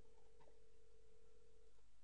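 A single steady telephone line tone, faint, following keypad dialling; it holds for just under two seconds and cuts off, with a small click about half a second in.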